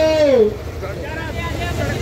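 A man's voice trails off with a falling pitch in the first half-second, then background voices over a low, steady rumble of road traffic.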